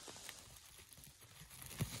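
Faint rustling of movement through grass and dry pine needles, with a soft knock near the end.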